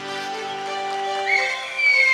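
A live folk band's final held chord rings out and slowly fades after the last drum strokes, with a thin high sliding note falling near the end.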